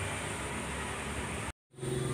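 Steady outdoor background hiss with no clear event in it. It cuts out to dead silence for a moment near the end at an edit.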